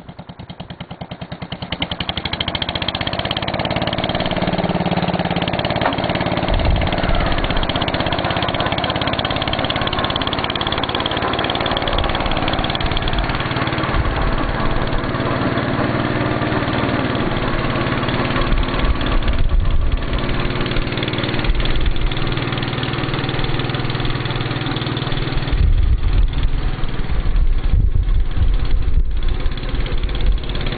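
Gravely walk-behind tractor's engine running steadily on charcoal gas from a tin-can gasifier, working as the tractor sets off mowing.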